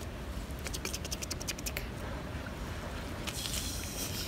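Close rustling and a quick run of small clicks and scratches, with a steady low rumble on the microphone throughout.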